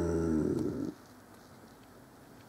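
A man's voice holding out the last syllable of a recited line as a steady, level low tone that stops sharply about a second in. Faint room tone follows.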